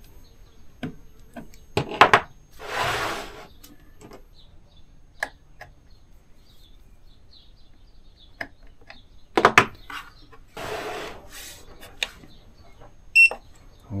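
Two sharp clicks, about seven seconds apart, as internal wiring plugs are pushed back into their sockets in an EcoFlow Delta Max portable power station. Each click is followed by about a second of rushing noise. Near the end, a short high electronic beep sounds as the power station switches on.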